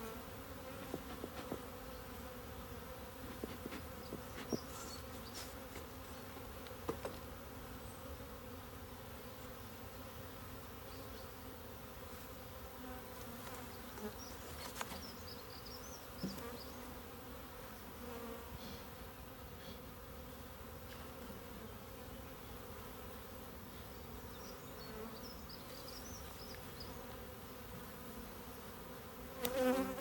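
Honeybees buzzing steadily in a low hum over an open Dadant hive, the colony stirred up by being moved into it from a nucleus box. A few light knocks of hive parts being handled come in the first few seconds.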